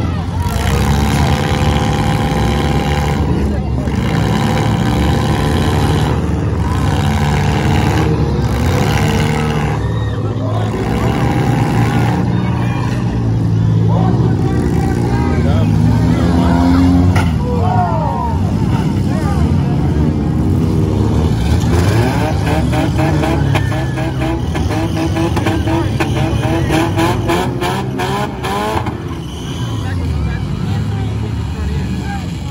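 Several small-car demolition derby engines running and revving hard, their pitch rising and falling as the cars spin and push, with voices mixed in over the engine noise.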